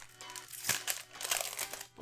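Foil wrapper of a Pokémon TCG booster pack crinkling in several short bursts as it is torn open, over soft background music.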